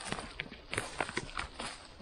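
Dry grass and moss rustling and crackling as a hand works through it, picking a cluster of chanterelle mushrooms: a quick run of sharp little ticks and snaps.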